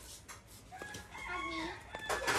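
A rooster crowing faintly in the background: one arching call that starts a little before a second in and fades near the end.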